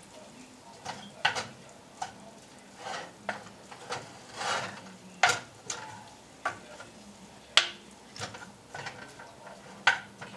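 Wooden spatula stirring and scraping cubed chicken in its juices around a cast-iron skillet: irregular scrapes and knocks against the pan, about one or two a second, over a light sizzle.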